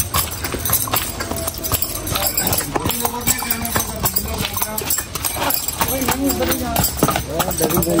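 A horse stamping and stepping its hooves on hard dirt ground as it prances in place while held by the bridle: many irregular clopping hoof strikes.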